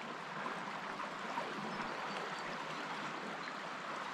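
Shallow creek water running steadily, an even rush and ripple of flowing water.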